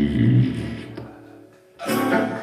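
Live band of acoustic guitar, electric guitar and upright bass holding a chord with a voice, fading out over about a second and a half. A sudden loud burst of sound cuts in near the end.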